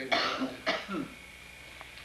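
A man coughing twice, about half a second apart.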